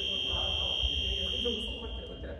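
Basketball game-timer buzzer sounding one long, steady, high electronic tone that fades out near the end.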